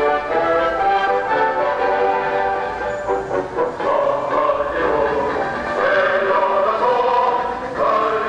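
Music with singing: held instrumental notes in the first half give way, about halfway through, to a choir of voices singing a melody.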